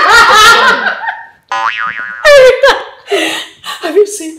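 A woman laughing loudly and openly, the loudest thing here, breaking off about a second in. It is followed by a short wobbling comic sound effect and then more laughter and talk.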